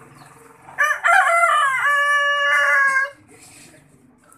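A rooster crowing once: one loud call of about two seconds, starting about a second in, wavering at first and then held on a steady pitch before breaking off.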